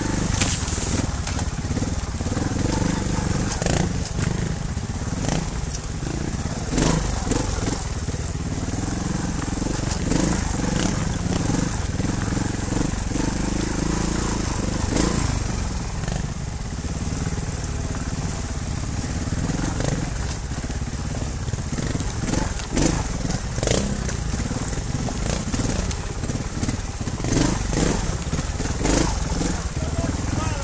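Trials motorcycles ridden slowly over a rocky trail: engines running at low revs, with frequent sharp clicks and knocks of stones under the tyres.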